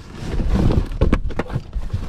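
Shoes being rummaged through inside a large cardboard box: irregular knocks, clacks and rustles as shoes hit each other and the cardboard walls.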